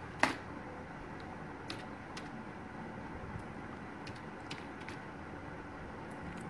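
Computer keyboard keys pressed one at a time while typing a password: about eight faint, unevenly spaced clicks over a steady low hiss, the first one a little louder.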